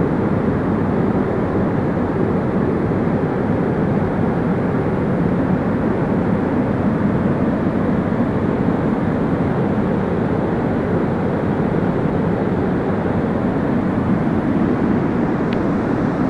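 Steady roar of a mountain river rushing over falls and rapids, loud and unbroken.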